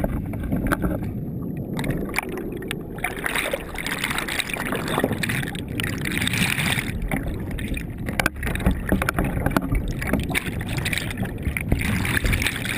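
Water churning around an underwater camera in shallow, sandy water: a dense, muffled rumble with crackling and clicks. The sound brightens and grows fuller about two seconds in.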